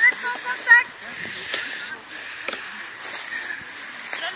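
Faint voices of people some way off in the first second, then a steady soft hiss.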